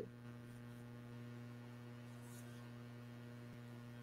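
Faint, steady electrical mains hum with a few weaker higher overtones, picked up by the microphone of a live video call.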